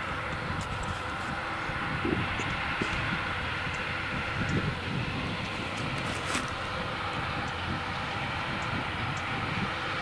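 Fendt 936 tractor and CLAAS Quadrant 5300 FC large square baler working in straw: a steady drone of engine and baler machinery. Irregular low thuds run through it, and a sharp clank comes about six seconds in.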